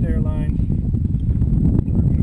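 Wind buffeting the microphone: a steady, fluttering low rumble, with a short untranscribed voice in the first half second.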